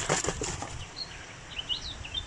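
A hand rummaging through cloth and netting in a plastic catch box for steel balls: a short run of rustles and light knocks, then quieter rustling. Birds chirp faintly near the end.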